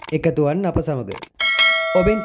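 A bell-like notification 'ding' sound effect from a YouTube subscribe-button animation, struck once about one and a half seconds in and ringing on as it fades. Speech fills the first part.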